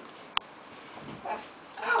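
One short, sharp click a little under half a second in, followed near the end by a burst of laughter.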